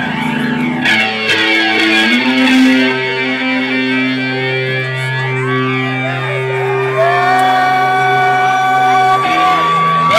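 Live new-wave band playing: electric guitar and synthesizer keyboard in long held notes, with a few sliding notes.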